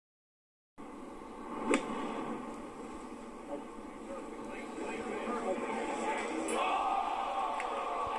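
Golf club striking the ball once in a short approach shot, heard from a TV broadcast's speaker, over a steady gallery murmur. Near the end the crowd noise swells as spectators react to the ball's flight.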